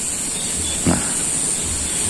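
Steady high-pitched hiss of rural outdoor background sound, with a short spoken "nah" about a second in.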